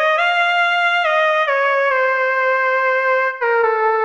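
Monophonic pulse-wave synth lead playing a slow melody of held notes that climbs at first and then steps down, sliding briefly from note to note (glide) with a slight wobble in pitch, through reverb.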